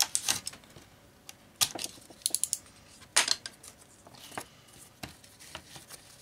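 A carpet knife cutting the end off a strip of 3 mm leather on a workbench: a string of short, sharp clicks and scrapes, with a quick run of four about two seconds in and a louder one about a second later.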